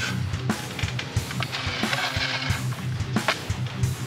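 Background music with guitar and drums keeping a steady beat.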